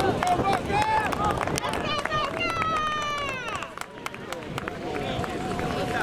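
Players and onlookers shouting across an open rugby pitch, several voices overlapping, with one long call falling in pitch about two and a half seconds in.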